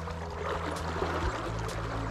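River water flowing and rushing around the waders, a steady hiss.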